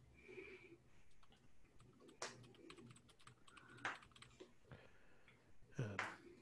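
Faint typing on a computer keyboard: a loose scatter of soft key clicks with a few sharper, louder ones.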